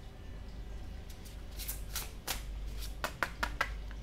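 A deck of tarot cards being handled on a wooden table: a card laid down, then the deck picked up, with a run of quick light clicks and rustles of card against card.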